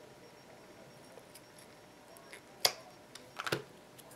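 Quiet room tone, then sharp clicks from small craft scissors and wooden cut-out pieces being handled: one click about two and a half seconds in, then a quick run of clicks near the end.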